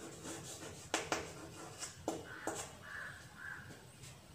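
Chalk writing on a chalkboard: sharp taps as the chalk strikes the board, with scratchy strokes between them. A few short calls sound in the background in the second half.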